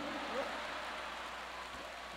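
Audience in a comedy theater laughing and clapping, an even crowd noise that slowly dies down.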